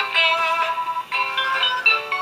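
Battery-operated animated saxophone-playing Santa figure playing its electronic saxophone melody through a small speaker: a thin, tinny run of held notes with no bass. The owner blames the figure's misbehaviour on a failing circuit board.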